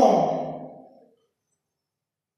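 The tail of a spoken word drawn out into a breathy exhale that fades away over about a second, then dead silence.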